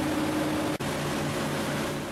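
Electric rice-milling machine running with a steady hum and whir as milled rice streams out of its spout, with a momentary break in the sound just under a second in.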